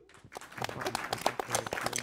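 Audience applauding, the clapping picking up about half a second in.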